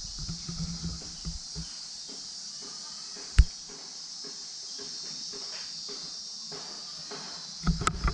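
A steady, high-pitched chorus of insects trilling, with one sharp click about three and a half seconds in.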